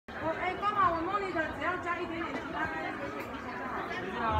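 Indistinct chatter of several people talking at once, no clear words.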